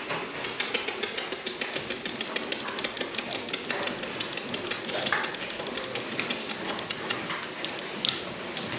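Many piglets' hooves clicking rapidly and irregularly on a slatted pen floor as the young pigs move about.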